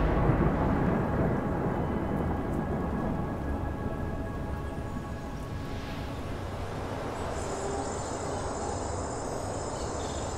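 Thunder rumbling and slowly dying away over a steady hiss of rain. Crickets start a high, steady chirping about seven seconds in.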